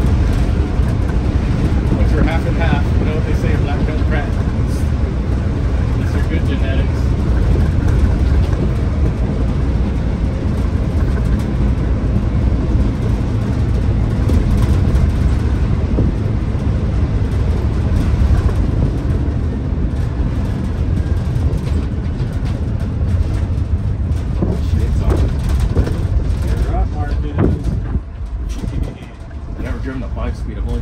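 Detroit Diesel 6-71 naturally aspirated two-stroke engine of a 1978 Crown school bus pulling steadily on the road, heard from inside the cabin as a loud, deep drone mixed with road noise. The engine note eases off briefly near the end.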